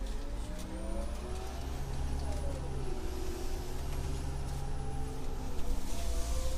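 Orion VII CNG city bus engine running, with a steady low hum beneath. Its pitch climbs over the first couple of seconds, drops back around the middle, then climbs again.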